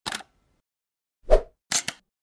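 Sound effects of an animated logo intro: a brief burst at the start, a louder, lower pop just past halfway, and two quick clicks near the end.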